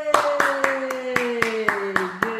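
Hand clapping, about four claps a second, under a long drawn-out cheer of "yay" whose pitch falls steadily.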